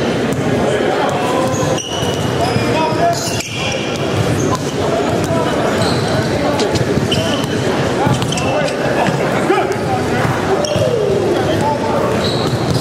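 Basketballs bouncing on a hardwood gym floor, with short high sneaker squeaks, over a steady hubbub of many people talking. The sound echoes as in a large hall.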